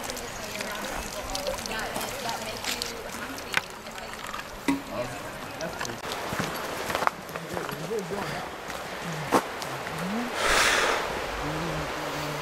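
A few sharp clicks of trekking-pole tips striking the trail, over a steady rush of river water and faint, indistinct voices. A short hissing rush comes near the end.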